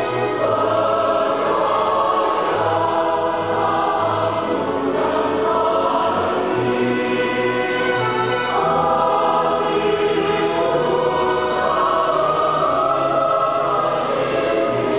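Mixed church choir of men's and women's voices singing a hymn in several parts at once, without a pause.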